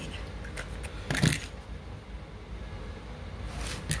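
Short rustling scrapes of cardboard packaging being worked with a utility knife, the loudest about a second in and another near the end.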